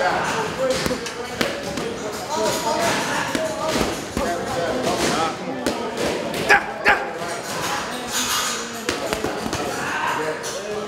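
Boxing gloves punching a leather heavy bag: scattered short smacks, the two loudest close together a little past halfway, over voices talking in the gym.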